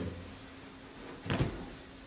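Quiet room with a faint steady hum, broken about two-thirds of the way through by a single brief knock.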